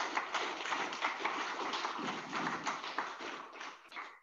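Audience applauding: a dense patter of hand claps that dies away near the end.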